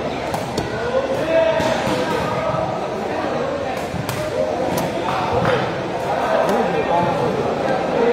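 A sepak takraw ball being kicked and bouncing on the court floor: several sharp smacks over the steady chatter of a crowd, echoing in a large hall.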